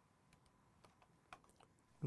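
Near silence with several faint, sharp clicks from a computer mouse and keyboard.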